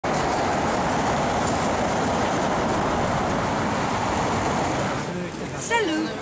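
Steady, dense road traffic noise that stops abruptly about five seconds in, where the footage cuts.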